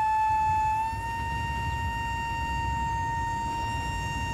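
Side-blown bamboo flute holding one long, steady note, which steps up slightly in pitch about a second in.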